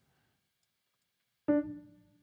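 A single mid-range note on the UVI Modern U sampled upright piano with its felt sordino mute, struck about one and a half seconds in and dying away quickly as the key is let go. The key-noise control is turned up.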